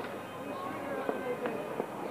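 Several people talking at once, overlapping voices with no single clear speaker, and a few short sharp clicks or pops through it.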